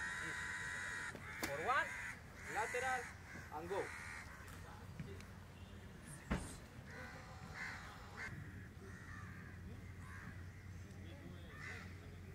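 Crows cawing repeatedly, loudest in a long call right at the start, with shouted voices between the calls and a single sharp thud about six seconds in.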